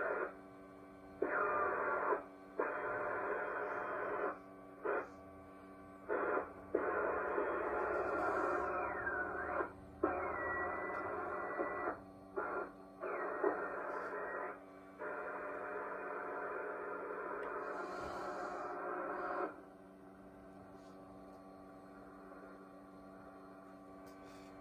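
Loudspeaker output of a 1920s Atwater Kent TRF radio receiver as its tuning dial is turned: muffled, crackly broadcast sound and static that cut in and out many times, with a whistle sliding down in pitch around eight seconds in and a steady whistle a little later. The set's output stops about twenty seconds in, leaving a steady hum.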